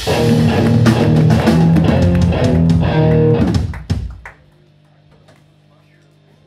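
Hardcore band playing live: electric guitars, bass and drum kit hammering out a riff that ends about four seconds in, as the song finishes, leaving only a faint steady hum.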